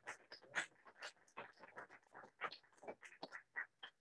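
Small audience applause that cuts off abruptly at the start, leaving faint, scattered handclaps.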